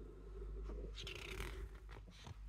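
Pages of a paper booklet being turned by hand: a faint rustle and slide of paper about a second in, with a light tap near the end.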